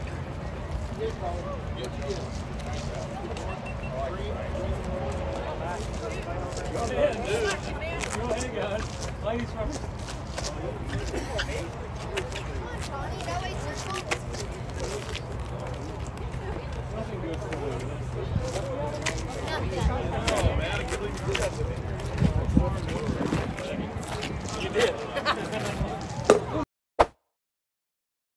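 Indistinct chatter of a group of people talking at once, with no clear words, over a low steady background hum. The sound cuts off abruptly near the end.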